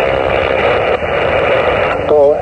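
Steady hiss of HF band noise from a Xiegu G90 transceiver's speaker in single-sideband receive on 20 meters, an even rush of static cut off above and below by the receiver's voice filter, with no station copied through it.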